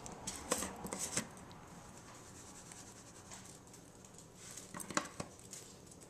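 Black pepper being shaken from its container over a bowl of shredded chicken: a quick run of light ticks and taps in the first second or so, then a few more taps about five seconds in.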